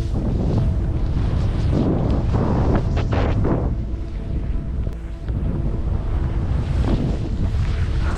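Wind buffeting the microphone as a skier descends fast, with the hiss of skis cutting through powder snow in louder surges on the turns, about two to three and a half seconds in and again near seven seconds.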